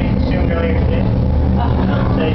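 Indistinct, muffled voices over a steady low rumble.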